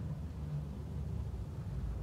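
Faint, steady low rumble of distant road traffic.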